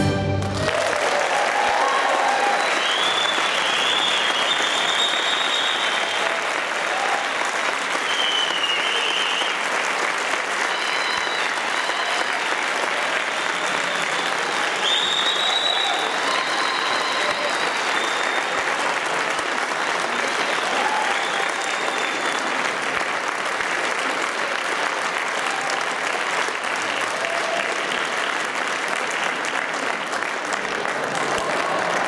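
A concert hall audience applauding steadily after the orchestra's final chord, which ends within the first half second. Shrill, arching cheers rise above the clapping several times.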